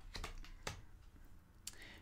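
Glossy-finished oracle cards being handled and laid down one on another: a few faint soft clicks and slides.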